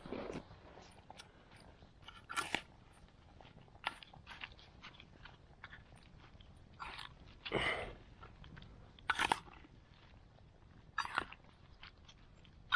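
Spoon stirring a salad of cucumber, tomato and mayonnaise in a small metal bowl: scattered wet crunches and clinks every second or two.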